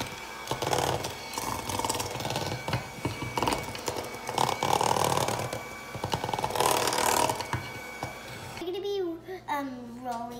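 Electric hand mixer running steadily on speed three, its beaters churning thick cookie dough and clattering against a stainless steel bowl. It stops abruptly about eight and a half seconds in, and a girl's voice follows.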